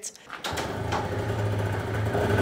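Small moped engine running steadily, starting about half a second in.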